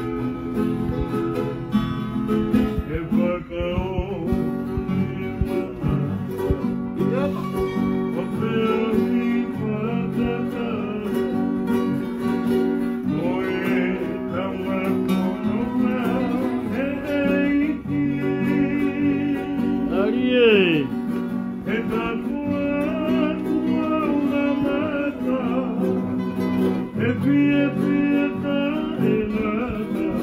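Acoustic guitar strummed steadily to accompany singing. About two-thirds of the way through, a voice swoops down from a high pitch to a low one.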